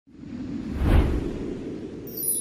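Whoosh sound effect with a deep rumble under it, swelling to a peak about a second in and then fading away, as the opening of a logo intro sting.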